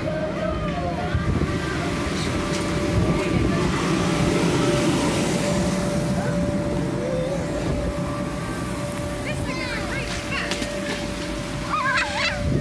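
Steady hum and low rumble of an inflatable bounce house's blower fan running continuously, with children's voices calling out now and then.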